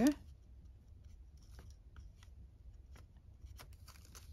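Faint scattered ticks and rustles of paper being handled while liquid glue is squeezed from a fine-tip bottle onto an envelope; otherwise quiet room tone.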